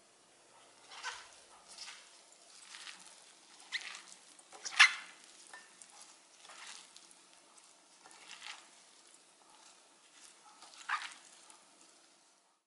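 Seasoned pickled radish strips being tossed and squeezed by a gloved hand in a glass bowl: irregular wet squishing and rustling about once a second, the loudest a little before the middle.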